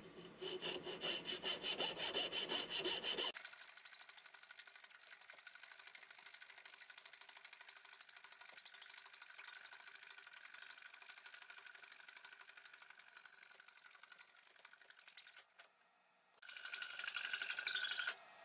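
A coping saw cutting through a maple blank, with quick rhythmic push-pull strokes, about four a second, for the first few seconds. The sound then turns abruptly to a steadier, fainter hiss for most of the rest, and drops out briefly near the end.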